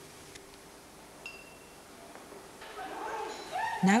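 Quiet room sound with a brief high ringing tone about a second in, then voices of people in the room rising over the last second or so.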